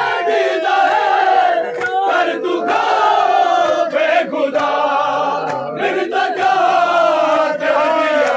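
A group of men chanting a noha, a Shia mourning lament, together in long held lines. Sharp slaps of hands striking bare chests in matam cut in here and there.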